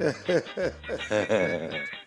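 Men laughing heartily in quick bursts of voice.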